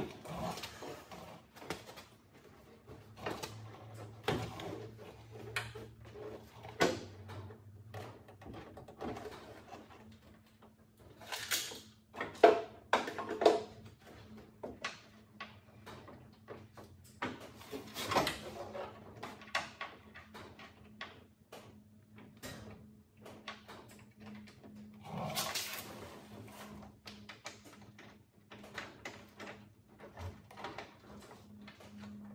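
Irregular clunks, knocks and rattles of a Subaru Brumby's steel tailgate being handled and swung up toward closed, with a few louder bangs among them. A faint steady hum runs underneath.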